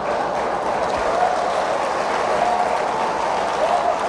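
Church audience laughing and applauding, a steady mass of many voices and clapping hands.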